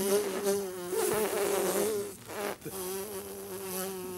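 A person imitating a buzzing fly with the mouth and voice: a steady, slightly wavering buzz that breaks off briefly a little past halfway and then carries on.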